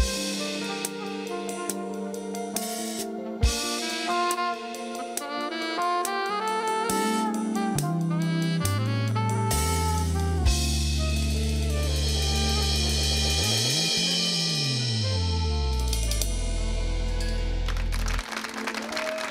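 Two saxophones playing a live duet over a band with drum kit and bass. The piece ends on a long held chord near the end.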